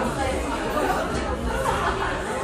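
Several people chattering at once, overlapping voices with no clear single speaker.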